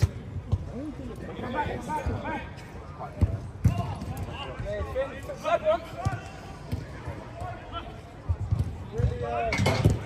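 A football being kicked on an artificial-turf pitch: scattered dull thuds of the ball, with players shouting across the pitch. A louder cluster of strikes comes near the end.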